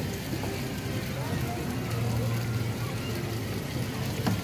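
Distant voices chattering over a steady low hum.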